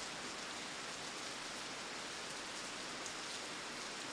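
A steady, even hiss at low level with no distinct events, in a pause between spoken phrases.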